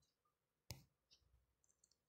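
Near silence broken by one sharp click about two-thirds of a second in, followed by a few much fainter ticks.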